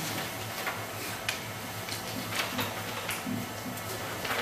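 Sheets of paper rustling and being shuffled in short, irregular bursts, over a steady low hum from the sound system.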